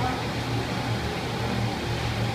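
A steady low hum with no distinct knocks or clicks.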